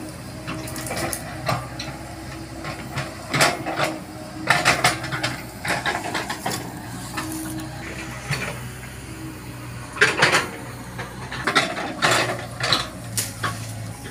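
Komatsu PC70 excavator running steadily while its bucket digs and scrapes through crunchy sandy soil and dead palm fronds. Irregular metallic clanks and scrapes ride over the engine hum, with the loudest bursts a little after halfway and again near the end.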